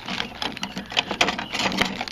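Rapid run of clicks and clatter from steel kitchen knives being handled and shifted against each other on a ribbed rubber mat.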